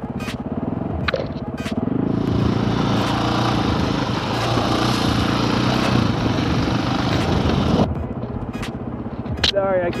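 KTM dirt bike engine running as the bike rides a trail. About two seconds in, the sound turns louder with a rush of wind over the engine, then drops back abruptly near the end.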